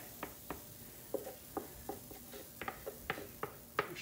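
Scattered light clicks and ticks, a few a second and irregular, from handling the batter pitcher and skillet on the stove.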